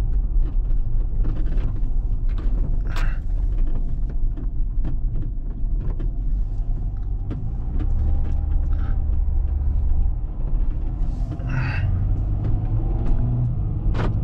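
Heavily loaded van driving, heard from inside the cabin: a steady low engine and road rumble with scattered light clicks and rattles, its tyres on gravel at first and then on pavement.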